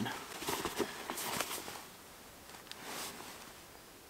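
Rustling and handling noise from a jacket and chest pack being fiddled with by hand, in irregular bursts through the first second and a half, then quieter, with one more brief rustle about three seconds in.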